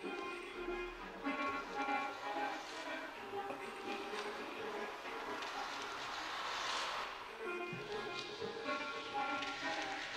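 Quiet, sparse ambient music from a piano with electronics: soft scattered sustained notes over a hissing texture that swells up around the middle and fades away.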